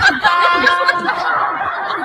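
A voice snickering and chuckling, with steady held tones under it for about the first second.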